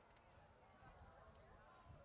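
Near silence, with faint distant voices murmuring.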